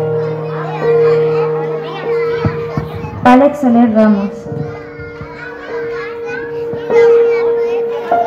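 Background music with long held notes, under the chatter of many small children's voices. A louder voice calls out about three seconds in.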